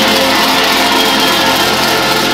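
Apostolic church brass band playing gospel music, the ensemble holding steady chords.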